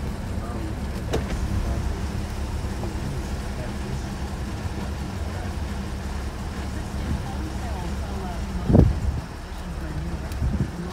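Porsche 911 Targa 4S's 3.8-litre flat-six idling steadily, heard from inside the cabin, while the electric Targa glass roof slides open. A single thump near the end is the loudest sound.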